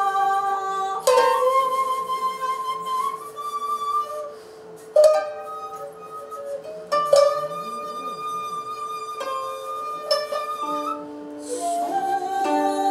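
Sankyoku ensemble of koto, shamisen and shakuhachi playing: long held shakuhachi notes over plucked koto and shamisen, with sharp plucked strokes about one, five and seven seconds in.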